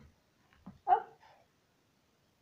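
A single short pitched animal call, like a yap, about a second in, after a soft click.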